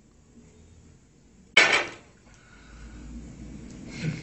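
One loud, sharp crash about a second and a half in, ringing briefly as it dies away, followed by faint low rustling noise.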